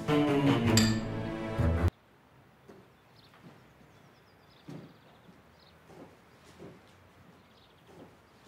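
Background music that cuts off suddenly about two seconds in, then near silence with faint footsteps on a hard tiled floor.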